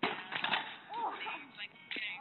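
A kick scooter and its rider crashing onto an asphalt road: a sudden clatter and thud at the start, a few more knocks about half a second in, then a short cry around one second.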